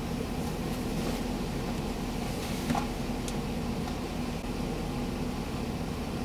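Car engine idling, heard from inside the cabin: a steady low hum, with a faint click about two and a half seconds in.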